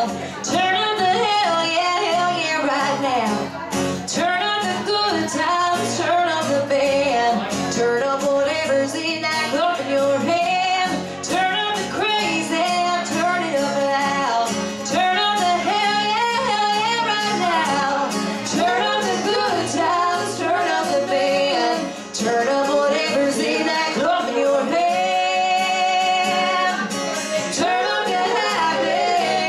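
Live acoustic music: two women singing in harmony over an acoustic guitar. The voices hold one long note near the end.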